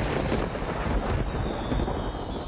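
A low rumbling noise with a hiss that sweeps down from very high, a whooshing sound effect used to mark a scene change.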